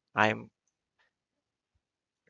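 Two brief spoken words, then near silence broken by a single faint click about a second in.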